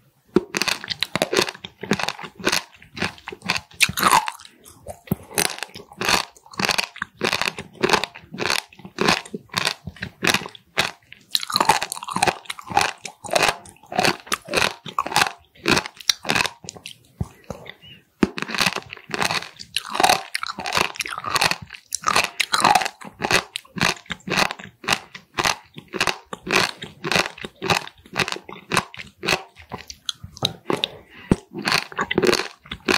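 Close-miked chewing of raw warty sea squirt (Styela plicata), its tough skin crunching in quick, irregular crunches, with a brief pause a little past the middle.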